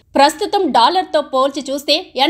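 Speech only: a woman's voice narrating without pause, with no other sound standing out.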